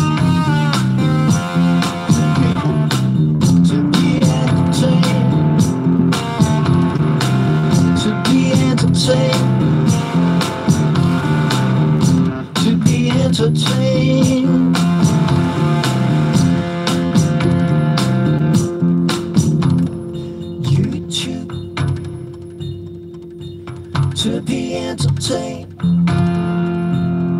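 Blues played on a hollow-body electric guitar over a looped, repeating bass line. About twenty seconds in, the looped line stops and the music drops to a quieter held tone with a few guitar notes, then builds again near the end.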